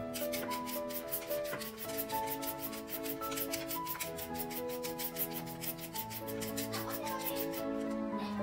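A julienne peeler's serrated blade scraping down a raw carrot in quick repeated strokes, about four a second, shredding it into thin strips. The strokes stop just before the end.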